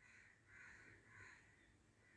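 Near silence: room tone, with two faint, short calls about half a second and a second in.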